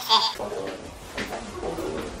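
A voice played fast-forwarded to a high, chattering pitch that cuts off about a third of a second in. After it comes a quieter room with faint low voices and a steady hum.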